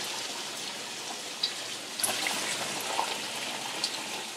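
Bathtub tap running, filling a large plastic bucket with water: a steady, even rush of water with a few faint ticks.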